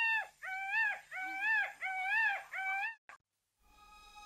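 A howling animal call: a long held note that breaks off just after the start, then four short calls, each rising and falling, stopping about three seconds in with a brief click. Soft music comes in near the end.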